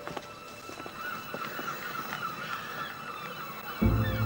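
Gulls calling faintly, a string of short calls over a quiet background.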